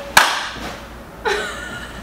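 A single sharp hand clap just after the start, then laughter, with a short laugh-like voice sound about a second in.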